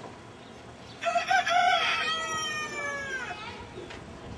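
A rooster crowing, starting about a second in: a few short broken notes, then one long note that falls in pitch.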